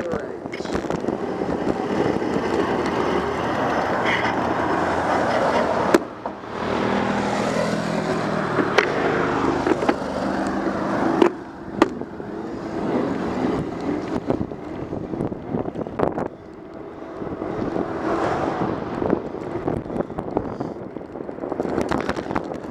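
Wind rush and tyre noise picked up by a camera mounted on a moving bicycle, with occasional sharp knocks and rattles as the bike rolls over bumps in the road.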